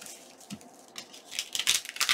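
Paper rustling under hands as a paper envelope is pressed and smoothed on a cutting mat, then picked up, with a burst of crinkling near the end.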